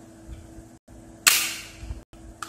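A single sudden sharp bang about a second in, dying away over about half a second, over a faint steady hum.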